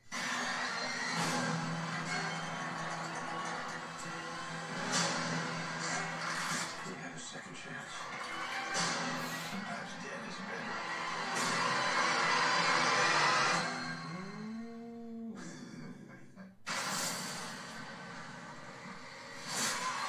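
Horror film trailer soundtrack: a dense, swelling score over a steady low drone, with a curving pitch sweep about fifteen seconds in. It cuts out for a moment about sixteen and a half seconds in, then comes back with loud sharp hits.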